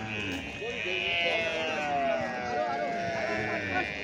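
Several cattle mooing and bawling, their drawn-out calls overlapping one another.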